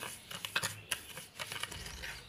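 Metal spoon stirring granulated sugar with almond oil and rose water in a small dish: a run of irregular light clicks and scrapes as the spoon knocks against the dish and grinds through the sugar.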